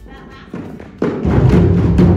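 Group hand-drumming on djembes and frame drums: a few scattered soft strikes, then the whole circle comes in together about a second in with loud, dense, low drum beats.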